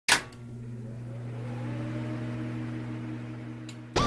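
Logo intro sound: a sharp hit, then a steady low hum with a faint slowly rising tone above it, cut off just before the song starts.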